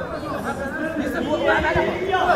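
Overlapping chatter of several voices, with players and onlookers talking and calling out over each other.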